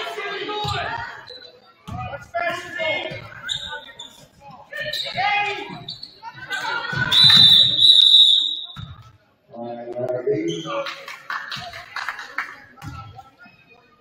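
Voices of players and spectators calling out in a gymnasium, with basketball bounces. About seven seconds in a referee's whistle blows one steady, shrill blast lasting about a second and a half, the loudest sound here.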